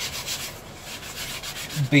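Sanding block scuffing the leather-wrapped grip of a prop mek'leth, rubbed in quick back-and-forth strokes, several a second, to weather the leather so it looks worn.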